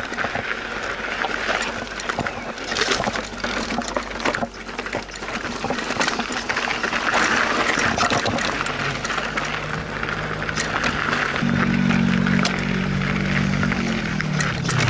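Electric mountain bike rolling down a rocky dirt trail: continuous tyre crunch on gravel with frequent rattles and knocks, and wind on the microphone. In the second half a steady low motor hum comes in and rises in pitch.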